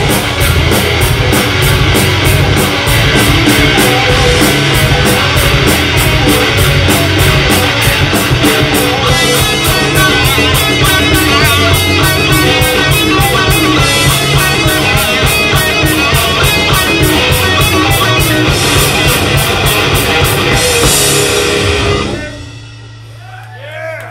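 Metal band playing live: distorted electric guitars, bass and a fast, even drum beat. The band stops suddenly about two seconds before the end, leaving a low ringing note that fades.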